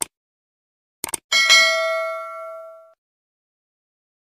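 Subscribe-button animation sound effect: a short click, then a quick double click about a second in, followed at once by a bright notification-bell ding that rings out and fades over about a second and a half.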